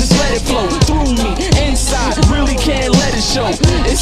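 Hip hop track: rapped vocals over a beat with a deep kick drum about every three-quarters of a second.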